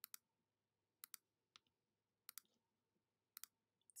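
Faint computer mouse button clicks, about five of them at roughly one a second, most heard as a quick press-and-release pair: anchor points being dropped one by one with the pen tool.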